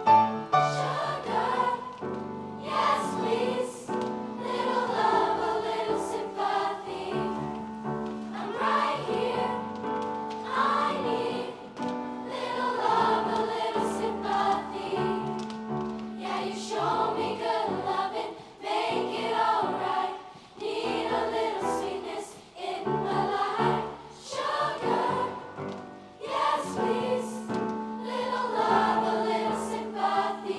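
Middle school girls' choir singing an upbeat song with choreography, over steady held low notes from the accompaniment.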